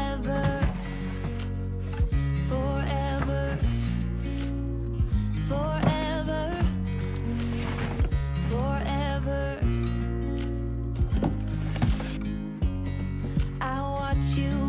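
Background music: a song with a sung vocal over sustained bass and soft percussion.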